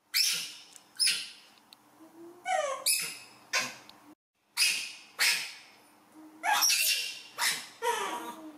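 Baby macaque crying: a rapid string of short, high-pitched cries, about ten in all, some sliding down in pitch. The calls are the young monkey's distress at being left on its own while the others are held.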